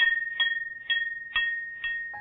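Little bells on a shop door jingling as the door is pushed open: a bright ring about twice a second, each strike ringing on, the whole growing fainter.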